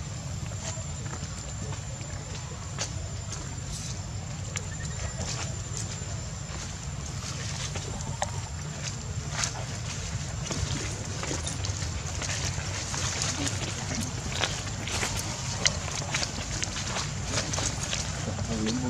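Outdoor ambience: a steady low rumble with scattered small clicks and rustles, over a faint steady high-pitched whine.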